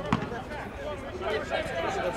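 Players' voices calling out across a football pitch, with a single sharp thump of a football being kicked just after the start.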